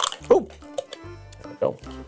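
Scissors snipping through a thin plastic drinking bottle, a few sharp crunching clicks as the top comes away. A short falling vocal exclamation comes early, and a spoken "No" near the end.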